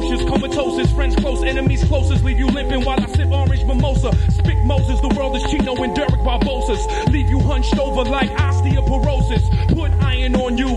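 A man freestyle rapping over a hip hop beat with a deep bass line, heard from a radio broadcast recording.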